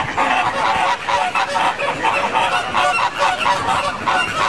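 A flock of flamingos honking, many calls overlapping in a dense, continuous chatter.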